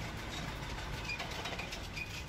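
A tank's engine running steadily and fairly quietly.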